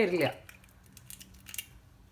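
Knife edge cutting into an eggshell and the shell being broken apart: faint small clicks and crackles, with a brief cluster of cracking about one and a half seconds in.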